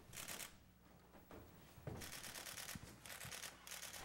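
Several short bursts of rapid shutter clicks from a single-lens reflex camera firing in continuous mode, one near the start and a run of them from about halfway on, with a few soft footfalls between.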